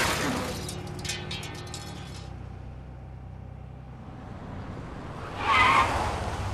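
A car pulling away fast past close by, its engine and tyre noise loud at first and fading over the first couple of seconds into a low steady hum. A brief squeal comes near the end.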